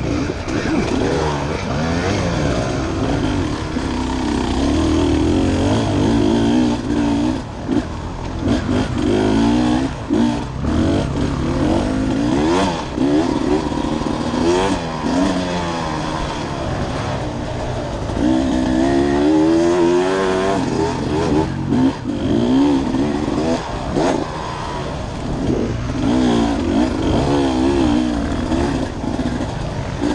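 Dirt bike engine ridden hard off-road, its pitch rising and falling constantly with throttle and gear changes, with a few short knocks among it.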